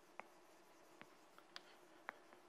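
Chalk writing on a blackboard, faint: a few light taps and short scratches of the chalk against the board, spaced irregularly.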